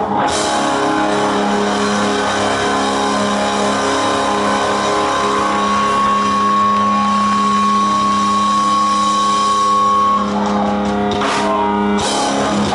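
Live rock band playing loud: electric guitars and a drum kit, with the guitars holding long sustained notes. The held notes break off about ten seconds in, followed by a few sharp drum hits.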